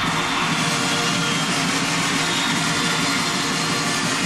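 Large concert crowd cheering and screaming in one steady, loud roar.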